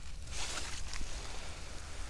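Rustling in dry fallen leaves and brush, strongest about half a second in, with a couple of faint clicks.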